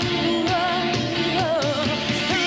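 A woman's lead vocal holds a wavering, sustained note that bends in pitch near the end, over a live rock band of synthesizers, keyboards, guitars, bass and steady drum beats.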